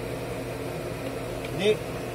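Generator set engine running with a steady drone, at speed with its voltage and frequency up. A short spoken word comes near the end.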